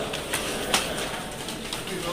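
Many people's footsteps hurrying on a stairwell, irregular sharp footfalls with the loudest about three quarters of a second in, over a crowd's voices.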